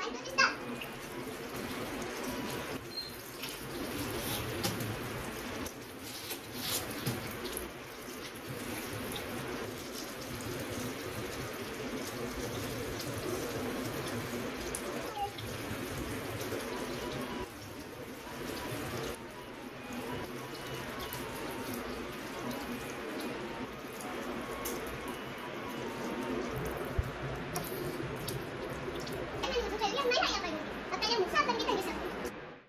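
Steady running water with a few brief knocks.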